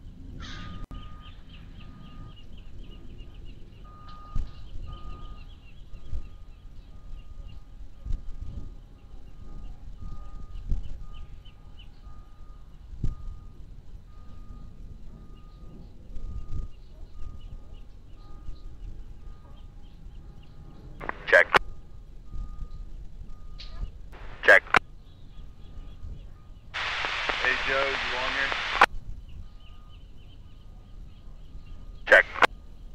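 Marine VHF radio feed between transmissions: low steady background hiss and hum with a faint steady tone, two short sharp pops about two-thirds of the way in, then a burst of radio static about two seconds long that starts and stops abruptly near the end.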